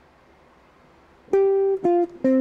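Semi-hollow electric guitar playing single notes: after a brief pause, one held note about a second and a half in, then a second note near the end, opening a short jazz V–I resolution phrase.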